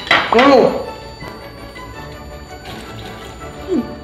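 A short, loud, muffled voiced sound from a mouth full of cookies and milk, rising and falling in pitch, about half a second in, over steady background music; a brief falling vocal glide near the end.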